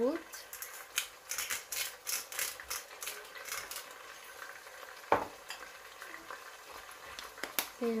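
Sea-salt grinder twisted over a pot, a rapid run of small crunchy clicks as the salt is ground out for about four seconds. Two louder single knocks follow later, about five and seven and a half seconds in.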